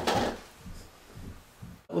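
Plastic battery door of a radio-control transmitter being handled and slid back into place, with small scattered plastic knocks and rubbing.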